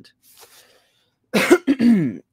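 A woman clearing her throat with two short, loud coughs about a second and a half in, after a faint breath.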